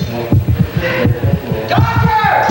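Heartbeat sound effect: rapid, regular low thumps of a racing heart, with a held high tone coming in near the end.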